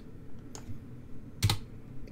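Computer keyboard keystrokes: a few light clicks, then one louder key press about one and a half seconds in, deleting a selected line of text.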